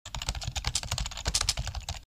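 Rapid computer-keyboard typing, a fast run of key clicks at about a dozen a second, stopping abruptly.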